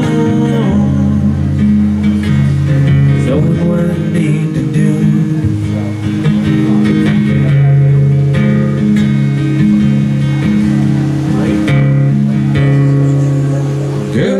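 Steel-string acoustic guitar strumming a slow instrumental chord progression, the chords changing every two seconds or so.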